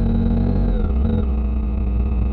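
Motorcycle engine running as the bike slows to a stop, recorded by a dash-cam on the bike: a steady low engine note with a faint whine falling in pitch about a second in.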